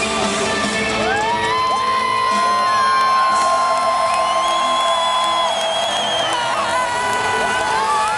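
Live rock band in an arena with a cheering, whooping crowd. A few long held high notes slide up into pitch and sustain with a slight waver, over the dense sound of band and crowd.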